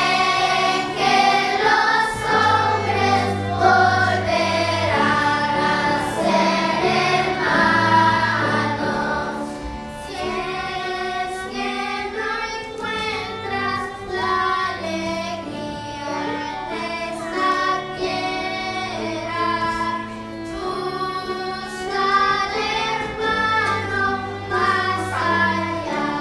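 Children singing together with a youth string orchestra, sustained low string notes beneath the melody.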